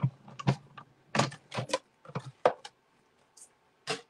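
Full-size Stampin' Cut & Emboss die-cutting machine running a tag die and paper through its rollers: a string of irregular clicks and knocks, thinning out after about three seconds with one more knock near the end.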